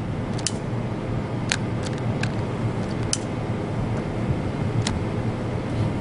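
A plush toy and its paper tag burning under a lighter flame, giving a few sharp crackles over a steady low hum.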